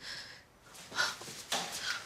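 A distressed woman's heavy, breathy sighs and exhalations, one at the start and several more in quick succession about a second in.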